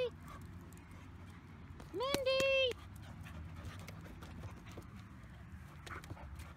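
Two dogs playing together, panting, under low steady background noise. About two seconds in, a person calls out once in a high voice.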